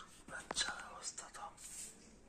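A person whispering softly, with one sharp tap about half a second in.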